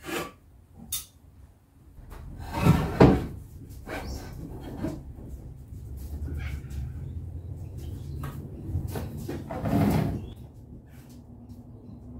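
A timber board being slid and knocked into position on a workbench and mitre saw table: a few light clicks, then two loud wooden clunks about three seconds in and another near the end, over a low scraping rub as the wood is pushed along.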